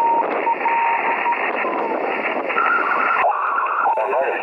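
Morse code (CW) tone keyed on and off in dots and dashes, received over band hiss through a Yaesu FT-817ND portable HF transceiver's speaker. The keying stops about a third of the way in, leaving static with a brief higher tone near the end.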